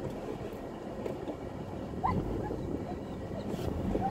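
Nissan Hardbody pickup heard from inside the cab, its engine running low with steady tyre and body noise as it moves slowly over soft sand, and a brief high chirp about halfway through.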